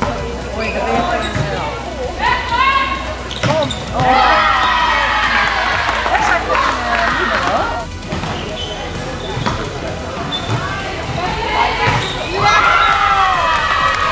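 Volleyball rally in a sports hall: the ball is struck several times with sharp smacks amid girls' high-pitched shouts and calls, which swell into cheering near the end.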